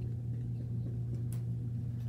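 Steady low room hum, with a short dry-erase marker stroke on a whiteboard about one and a half seconds in.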